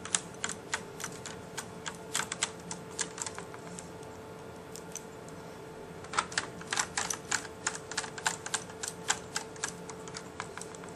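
A screwdriver driving small screws into a netbook's plastic chassis: runs of quick, light clicks, several a second, thinning out in the middle before picking up again.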